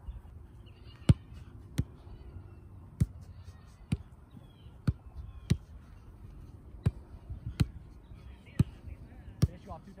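Soccer balls being struck by foot in a passing drill: about ten sharp thuds, mostly in pairs about two-thirds of a second apart, a first touch to control and then a pass.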